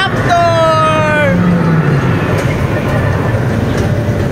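A high child's voice gives one drawn-out cry that falls in pitch, starting just after the opening. Under it runs a steady low rumble.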